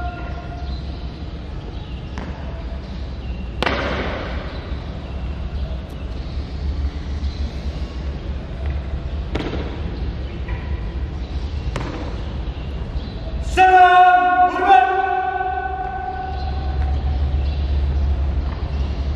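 Scouts' marching drill on a tiled hall floor: a few sharp boot stamps, the loudest about four seconds in, over a steady low rumble. Near the end comes one long, drawn-out shouted drill command.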